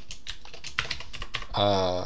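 Rapid typing on a computer keyboard, a quick run of keystroke clicks, as code is entered. Near the end the keystrokes give way to a short, held vocal sound from the typist, the loudest sound here.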